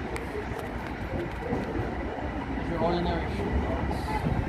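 Long Island Rail Road M7 electric multiple-unit train approaching the station, its rumble and rail noise building steadily, with a thin, steady high tone above it.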